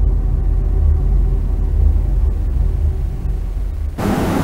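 A deep, loud rumbling bass sound effect from the TV programme's bumper, steady throughout with a faint tone over it, cutting off abruptly at the end.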